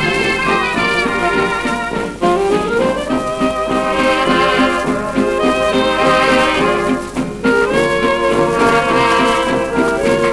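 1933 British dance band on a 78 rpm shellac record playing an instrumental passage, with trumpets and trombone to the fore over the rhythm section; a rising run comes in about two seconds in. The sound is cut off above the upper treble, as on an old shellac recording.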